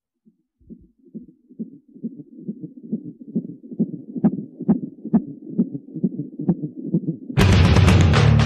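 Recorded heartbeat intro of a metal backing track: a fetal heartbeat pulsing about twice a second, fading in and growing louder, with sharper drum-like hits joining from about four seconds in. Just over seven seconds in, the full band comes in loud with distorted guitars and drums.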